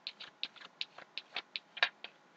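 A tarot deck being shuffled by hand: a quick, even run of card clicks, about five or six a second, with a sharper click near the end.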